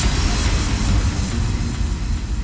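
Dubstep track in an electronic mix, in a section without drums: a steady noisy wash over a deep bass rumble, right after a short break in the music.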